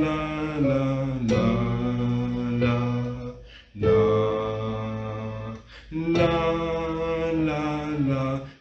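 A male voice sings an Icelandic song in slow, long held notes over a steady low accompaniment. Phrases break off briefly about three and a half seconds in and again near six seconds.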